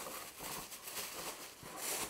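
Thin plastic bag rustling and crinkling in irregular small crackles as it is handled and tucked over a cardboard box, a little louder near the end.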